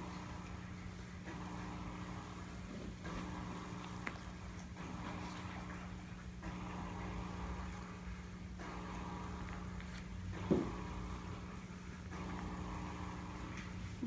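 Small battery motor of a spinning cat toy running with a steady hum, its hidden wand whirring under the felt track in stretches that break off about every two seconds. Once, about ten and a half seconds in, a brief cat call.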